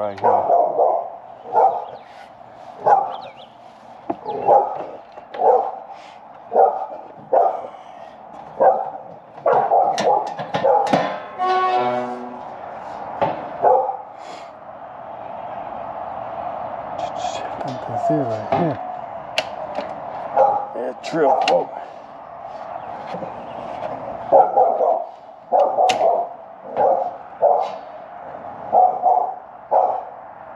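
A dog barking over and over, about one or two barks a second. There is a quieter stretch of fewer barks in the middle, and steady barking again near the end.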